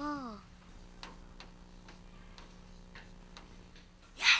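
Chalk on a blackboard as characters are written: about eight light, irregular taps and ticks over the last three seconds. A brief wavering pitched tone fades out at the very start, over a faint steady hum.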